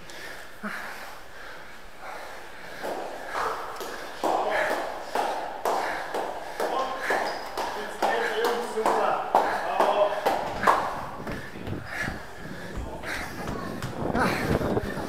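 An announcer's voice over loudspeakers in a large hall, echoing and unclear, growing louder through most of the stretch. Under it are a stair runner's breathing and quick footsteps on concrete steps.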